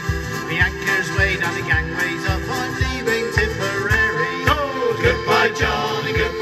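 Male shanty group singing a folk song live through a PA, accompanied by strummed acoustic guitar and piano accordion, with a steady low beat about twice a second.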